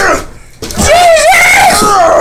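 A man screaming: a short vocal burst at the start, then a loud, long, wavering high-pitched yell from about half a second in.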